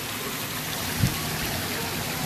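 Water splashing steadily from a tiered fountain, with a brief low thump about halfway through.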